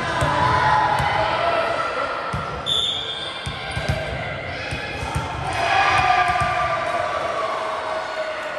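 A volleyball thudding as it bounces on a hardwood gym floor, with players' voices calling out and a short high tone about three seconds in.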